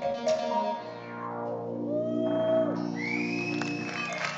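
Live electronic synthesizer music: a repeating staccato synth pattern stops about a second in and gives way to a sustained synth drone, with tones gliding in pitch and one sweeping sharply upward near the end.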